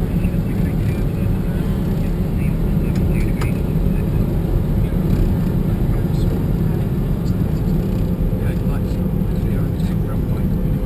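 Steady flight-deck noise of a Bombardier Challenger 605 on final approach: a constant low rush of airflow and engine noise, with a faint steady hum above it.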